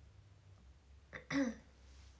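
A young woman clears her throat once, briefly, a little over a second in.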